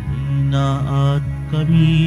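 Slow church music for Communion: low notes held steady under a higher melody that wavers and changes pitch.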